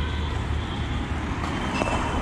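Street traffic, with a car passing close by near the end over a steady low rumble.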